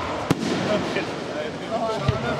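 Aerial fireworks going off: one sharp bang about a third of a second in, over a steady rumble of the display.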